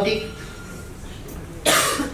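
A man's single short cough about a second and a half in, during a pause in his speech.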